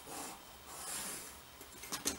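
Faint scratching of a pencil drawn firmly along a ruler's edge on paper, in two soft strokes, the second longer.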